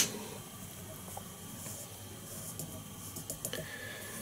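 Quiet handling noise: faint rustling and small scattered ticks as a strand of synthetic yarn is pulled out by hand for dubbing a fly-tying body.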